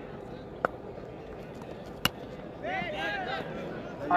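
A single sharp crack of a cricket bat hitting a tennis ball about two seconds in, over steady open-ground noise, followed by a second of shouting voices.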